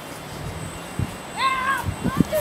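A short high-pitched squeal from a person, rising and then falling, about one and a half seconds in, like a child's excited cry. A dull thump comes just before it.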